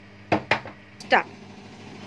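Two quick, sharp knocks against a plastic mixing bowl of freshly sifted flour, a fraction of a second apart, as the sifting is finished.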